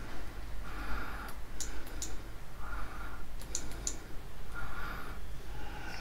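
Push button of an Olight Javelot Mini flashlight being clicked to cycle its modes: several sharp clicks in two short clusters about two seconds apart.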